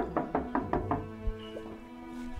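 Knocking on a wooden door, a quick run of about six raps a second that stops about a second in, over soft background music from a drama soundtrack.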